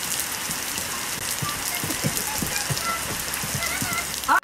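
Steady rain falling on wet pavement: an even hiss with fine pattering throughout.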